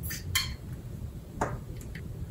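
A few short hissing sprays from the atomizer of a Carolina Herrera Good Girl Légère eau de parfum bottle, spaced irregularly over a couple of seconds.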